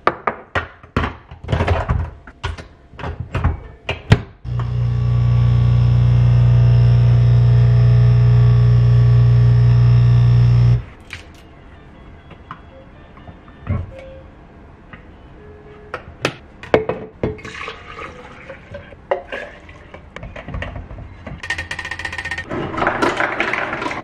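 Capsule espresso machine: clicks and knocks as it is loaded, then its pump buzzing steadily for about six seconds while it brews, cutting off suddenly. Afterwards, light clinks of a spoon stirring in a ceramic mug.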